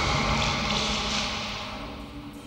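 Film-trailer sound effect dying away: a hissing, whooshing noise that fades out over the two seconds, above a faint steady low drone.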